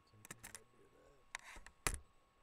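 A few short sharp clicks and taps, with one louder knock near the end, over faint mumbling.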